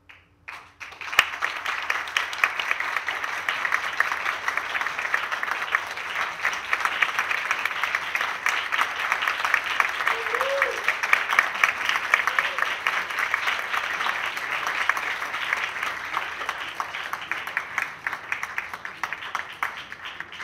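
Audience applauding, the clapping starting abruptly about a second in and carrying on steadily, with a brief call from a voice near the middle.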